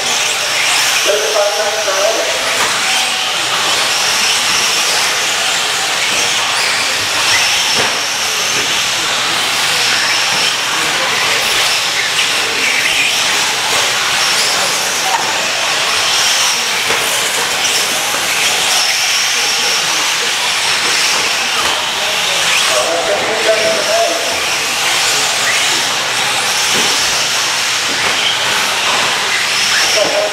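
Radio-controlled 4x4 short-course race trucks running laps on an indoor dirt track: a steady hiss of motors and tyres on the dirt, with a high whine that comes and goes as trucks pass.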